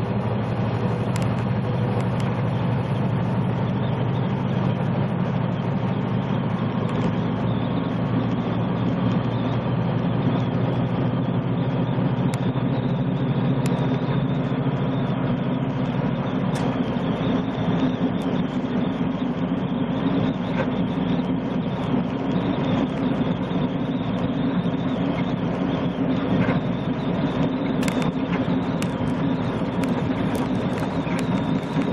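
Semi-truck's diesel engine and tyre noise at highway cruising speed, heard inside the cab as a steady drone. About halfway through, the low drone moves up to a higher pitch.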